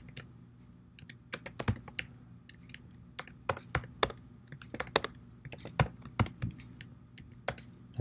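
Keystrokes on a computer keyboard while code is entered, coming in irregular short runs with brief pauses. A faint steady low hum runs underneath.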